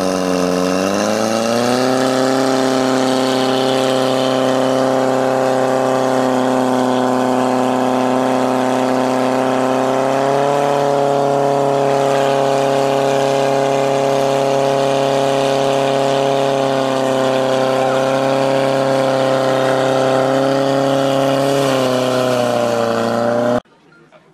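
Portable fire pump's engine running at high revs while pumping water. Its pitch rises over the first couple of seconds as it comes up to speed, steps up slightly about ten seconds in, then holds steady until the sound stops abruptly just before the end.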